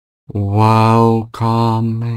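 A man's voice chanting two long held notes on one low, steady pitch, the second starting right after the first breaks off.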